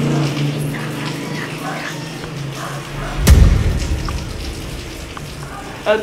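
A single sudden, heavy thump about three seconds in, the loudest sound here, with a deep rumble dying away over about a second. A faint held voice sound comes before it.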